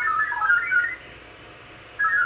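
VARA HF modem digital tones coming from a second radio that monitors the frequency, sent as the modem calls a remote station to connect. The tones hop in pitch for about a second, pause for about a second, then start again right at the end.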